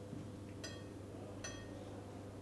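A metal spoon clinking twice against tableware, about a second apart, each clink short and ringing, over a low steady hum.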